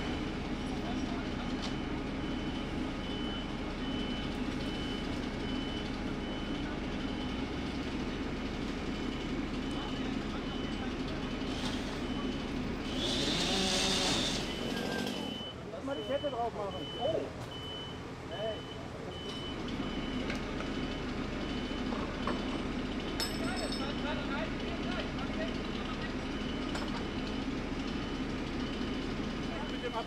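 A heavy fire-service truck's engine running steadily, with a high warning beep repeating at an even pace throughout. A short burst of hissing comes about halfway through, and faint voices follow.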